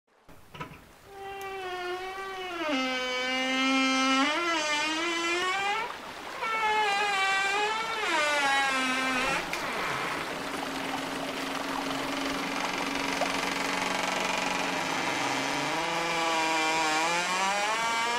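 A buzzy, wordless melody of long held notes that slide up and down in pitch. It breaks briefly about six seconds in, and in the second half it turns hazier, with a lower line rising beneath a held note.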